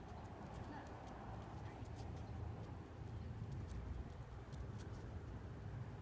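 Light, irregular clicking of a corgi's claws on concrete as it walks and sniffs along on the leash, over a low steady rumble.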